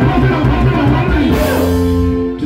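Live band music led by a Peavey drum kit played hard, with sustained bass and guitar notes underneath. A cymbal crash rings out over the last half-second or so.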